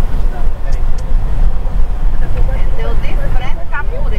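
Moving car heard from inside the cabin: a steady, loud low rumble of engine and tyres on the road, with faint voices underneath.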